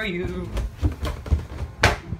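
Several soft thuds of footsteps while walking slowly, then one sharp knock near the end.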